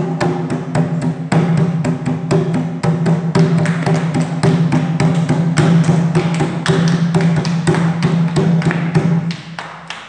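Tambor alegre, a rope-tuned, hide-headed Colombian cumbia hand drum, struck with both hands in a quick, even run of strokes. The playing stops shortly before the end.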